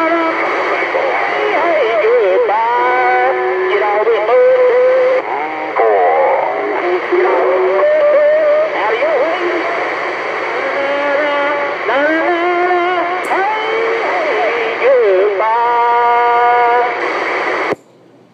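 Received audio from a Galaxy CB radio: narrow-band voices from other stations, several overlapping and warbling so that no words come through, with a brief steady tone about two seconds before the end. The signal cuts off abruptly just before the end.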